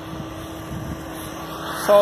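A road vehicle with a steady engine hum, its tyre and engine noise building toward the end as it approaches.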